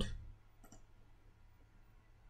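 A few faint computer mouse clicks over a low, steady background hum.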